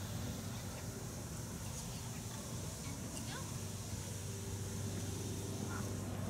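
Steady low background hum and noise, with no clear event standing out.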